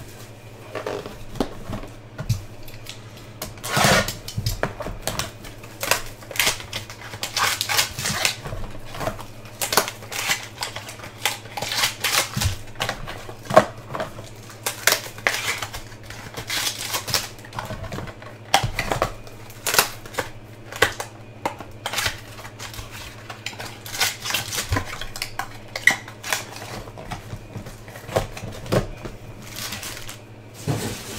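Baseball trading cards and their box packaging being handled and opened: irregular clicks, taps and rustles, over a steady low hum.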